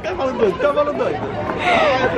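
Indistinct voices talking, with no clear words; a brighter, higher voice comes in near the end.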